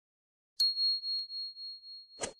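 Notification-bell sound effect from a subscribe-button animation: a click about half a second in, then a single high ding. The ding rings on with a pulsing loudness that slowly fades.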